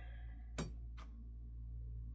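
Metal clamping frame of a resin printer's vat being set down over the PFA release film and pressed into place: a brief squeak as it slides, then two sharp clicks about half a second apart as it seats, over a steady low hum.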